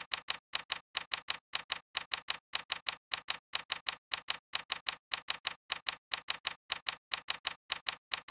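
Typing sound effect: an even run of sharp key clicks, about five a second and many in close pairs, one for each character of text being typed.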